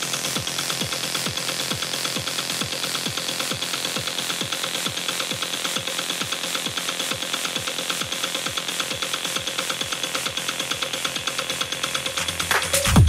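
Techno DJ set in a breakdown: the bass is cut, leaving a fast, even beat of thin kick drums, each dropping in pitch, under a high hiss that slowly falls in pitch.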